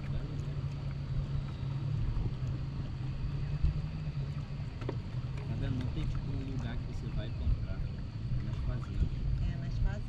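Steady low rumble of wind and moving water around a bamboo raft drifting on a river, with faint distant voices now and then.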